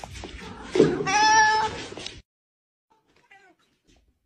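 A domestic cat meows loudly once, a drawn-out meow starting about a second in. The sound cuts off abruptly a little after two seconds.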